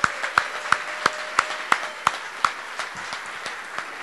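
Audience applauding, with one person's claps close to the microphone standing out, evenly spaced at about three a second and thinning out toward the end.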